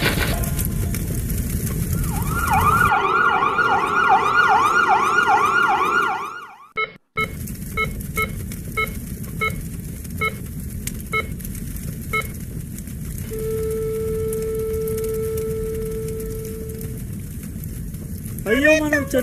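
Sound effects for a crash scene: an emergency siren wailing in quick rising-and-falling sweeps for a few seconds. After it cuts out, a series of short, evenly spaced electronic beeps follows, then one long steady tone.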